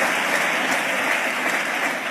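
Audience applauding steadily, easing off slightly near the end.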